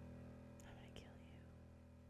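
Faint tail of outro music dying away, with a brief faint whisper about half a second in.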